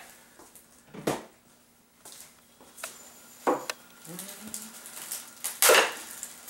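A few sharp knocks and clinks of hard parts being handled, three in all, the loudest just before the end, over a faint steady hum.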